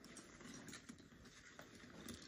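Near silence with faint rustles and soft clicks of a faux-leather diaper-bag backpack being handled and opened.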